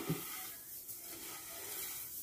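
Faint, soft rustling of hands rubbing oil into uncooked seffa vermicelli on a plate.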